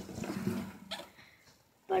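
A girl's brief wordless vocal sound that fades out within about a second.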